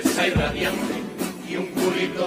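Carnival comparsa music: a male group singing to guitars and percussion, with a deep drum stroke about a third of a second in.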